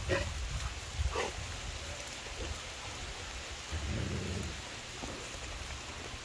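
Steady hiss of light rain with a low rumble, and two brief falling dog whines, one at the start and one about a second in.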